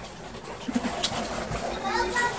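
A person chewing a mouthful of food behind a hand held over the mouth, with a brief closed-lip hum.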